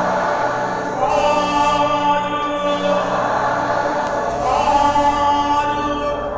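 A group of voices singing a slow devotional song in unison, held notes over a steady musical accompaniment.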